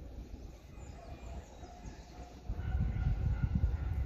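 Overhead-line maintenance rail vehicle approaching, its low rumble growing much louder about two-thirds of the way through, with a faint steady whine coming in at the same time.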